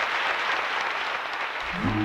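Audience applauding a stage dance performance, a dense steady clapping. Music comes in under it near the end.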